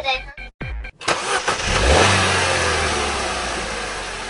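Cartoon car sound effect: engine noise comes in suddenly about a second in, then settles into a steady low drone that slowly fades.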